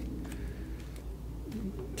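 Faint cooing of a pigeon or dove against a low steady background hum.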